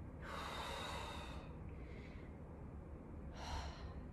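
A woman breathing hard with exertion: one long breath out in the first second or so and a shorter breath near the end.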